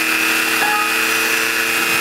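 A Dremel rotary tool spinning a cutoff wheel and a Sherline 4400 lathe turning a small steel rod, both motors running together with a steady whine.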